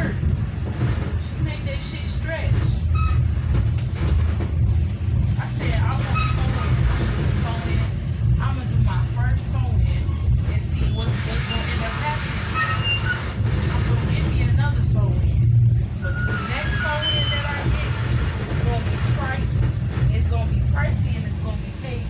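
Metra commuter train running, heard from inside the coach: a steady low rumble, with indistinct voices of passengers talking over it.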